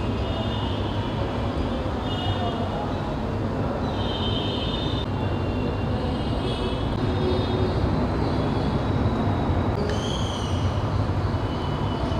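Steady background noise with a low hum running throughout; faint high tones come and go over it.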